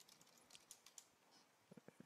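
Faint keystrokes on a computer keyboard as a password is typed at a sudo prompt: a scattering of light clicks through the first second, then a few more near the end.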